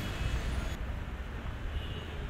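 City street traffic: a steady low rumble of cars passing by. Under a second in, the higher hiss drops away suddenly, leaving only the low rumble.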